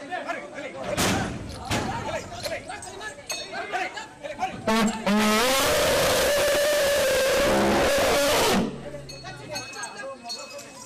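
Asian elephant trumpeting, one long, loud call of about three and a half seconds that starts about five seconds in and cuts off suddenly, among people's voices.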